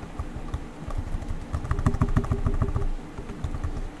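Computer keyboard keys clicking, a few scattered keystrokes and then a quick run of them from about a second and a half in to near three seconds, over a steady low hum.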